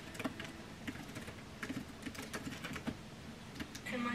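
Fingers typing on a computer keyboard: quick, irregular key clicks.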